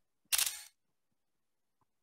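A single short, sharp noise burst about a third of a second in, lasting under half a second: a click-like sound on the microphone.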